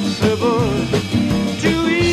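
1960s folk-pop record: a male voice sings with vibrato over guitar and a steady beat, and about a second and a half in a long held note begins.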